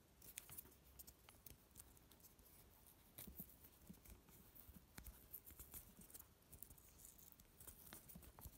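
Near silence with faint, scattered small clicks and rustles of fingers twisting thin wires together and wrapping electrical tape around the joint, more frequent in the second half.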